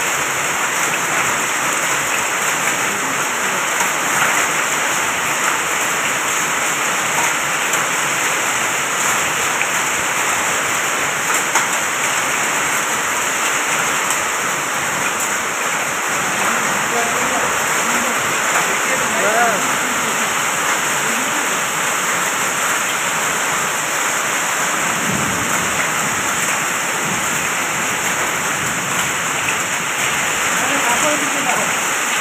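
Hailstorm: heavy rain mixed with small hailstones falling steadily on a dirt road, a dense, even hiss.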